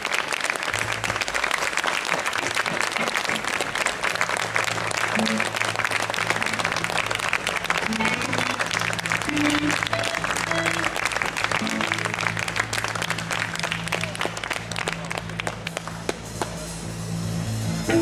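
Audience applauding and clapping, thinning out after about fourteen seconds, over a low sustained keyboard chord that starts about a second in, with a few short higher notes scattered through the middle.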